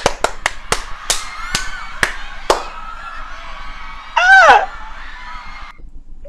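A person clapping her hands about nine times, the claps slowing and thinning out over the first two and a half seconds. About four seconds in comes a short, loud, excited squeal that rises and then falls in pitch.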